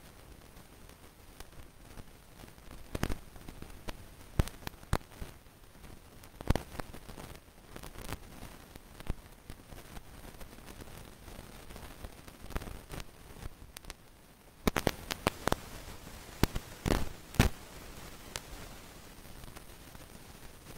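Scattered sharp clicks and crackles over a low background hiss, a few single ones early and a denser cluster of them a little before the end.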